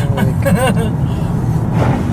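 Steady low rumble of a car driving, heard from inside the cabin, with brief bits of voices over it.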